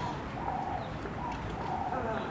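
A dove or pigeon cooing: a run of short, even-pitched notes, about two a second, over a low background rumble.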